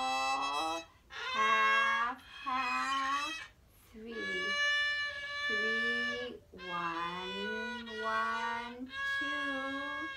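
A beginner's violin playing long whole-bow notes starting on the E string, a series of sustained notes about a second or two each with short breaks between them. A woman's voice sings the note names along with the notes.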